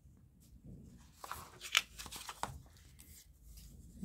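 Paper and card being handled on a cutting mat: soft rustling and light scraping as the cut card pieces are moved and laid onto a book page, with a few sharper crackles, the loudest a little before the middle.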